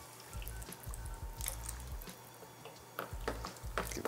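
Water poured from a can into a pan of hot tomato sauce: a faint pouring and dripping, with a few light clicks near the end as a wooden spoon starts to stir. Quiet background music runs underneath.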